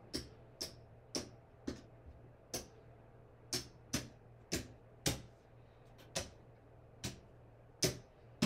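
Casino poker chips clacking sharply as they are picked up off a craps layout and stacked, about two clacks a second, as the losing bets are taken down after a seven-out.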